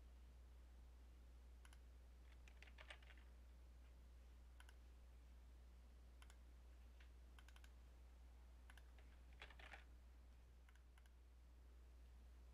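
Near silence broken by faint, scattered clicks of a computer mouse and keyboard, a few of them bunched into quick runs about 2.5 and 9.5 seconds in, over a low steady hum.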